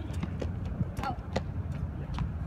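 Tennis ball being hit and bouncing on an outdoor hard court: about four sharp knocks in two seconds, over steady low background noise.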